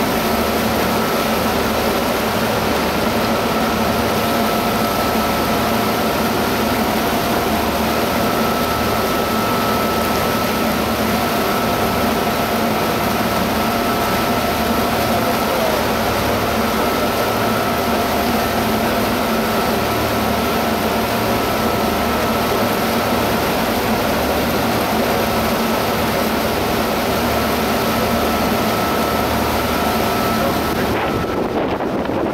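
A sightseeing boat's engine running steadily under way, heard from the stern as an even drone with a constant hum, over the churn of its propeller wash.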